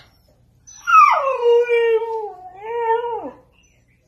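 Siberian husky giving one long howling cry that starts high, drops sharply, then holds steady before falling off a little past three seconds in. She is voicing her distress at not being able to climb the ladder to the roof.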